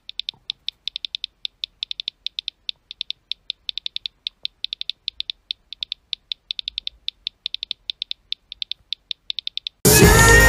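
Phone keyboard key-click sounds from a typing filter: rapid short clicks, about seven a second, one for each letter as a message is typed out, with brief irregular pauses. The music cuts back in at the very end.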